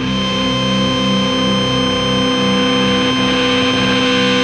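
Distorted electric guitar feedback and noise opening a hardcore punk song: several steady ringing tones are held over a low drone that pulses about twice a second.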